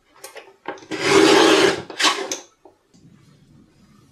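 Tim Holtz Tonic paper trimmer's sliding blade cutting through cardstock: a few light clicks, then a long scraping swish of about a second, and a shorter scrape just after.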